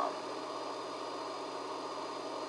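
Steady background hum with a faint, constant high whine, unchanging throughout; no other events.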